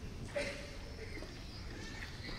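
A kendo fighter's short kiai shout, a sudden loud cry about a third of a second in, followed by fainter voiced calls over the murmur of a large hall.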